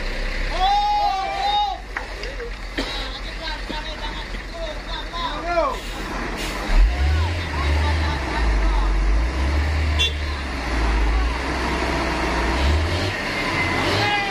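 Heavy diesel truck engine working hard under load while a loaded dump truck is hauled out of deep mud on a tow rope; the engine note rises about seven seconds in and stays strong. Men shout over it in the first half.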